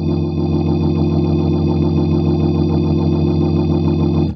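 Clavia Nord C2D clonewheel organ, a Hammond B-3 clone, holding one sustained chord on both manuals, with a fast, even warble from its rotary-speaker (Leslie) simulation.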